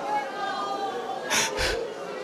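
Two short, sharp breaths from a preacher into a handheld microphone near the end, over a low background of congregation voices murmuring prayer.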